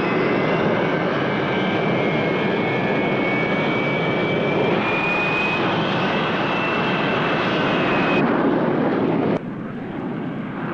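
Jet fighter's engine running with a loud, steady roar and a high whine that rises slowly in pitch. The whine stops near the end, and the roar then cuts off suddenly.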